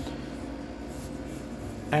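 Steady low hum with faint background hiss: room tone with no distinct event, until a man's voice starts right at the end.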